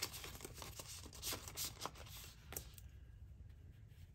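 Paper banknotes rustling and crinkling faintly as a small stack of dollar bills is handled, in a few light crackles over the first couple of seconds, then quieter.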